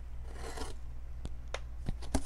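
A utility knife blade slitting packing tape on a cardboard box: a short scraping rasp, then a few sharp clicks in the second half.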